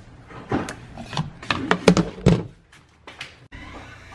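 Hard plastic clicking and knocking as a plastic filter wrench is worked against a plastic whole-house filter housing: a dozen or so short sharp clicks, ending in a heavier thump about two seconds in. Near the end a faint steady hiss starts abruptly.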